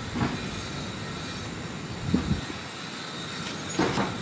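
Steady outdoor background noise with faint steady high tones, and three soft low thumps about two seconds apart.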